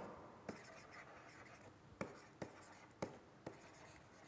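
Faint writing sounds of a stylus on a tablet: light scratching with about five short taps of the pen tip.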